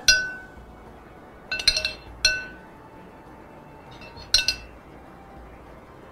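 A metal spoon clinking against a red serving bowl as fattoush salad is stirred and tossed: about five short ringing clinks, a few close together in the first half and one more after about four seconds.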